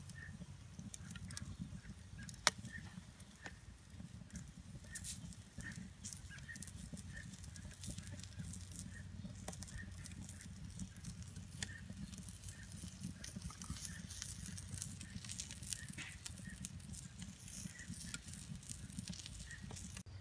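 Hot fire burning in a Weber kettle grill fitted with a KettlePizza insert, crackling with scattered sharp pops over a low steady rumble, with one louder pop about two and a half seconds in.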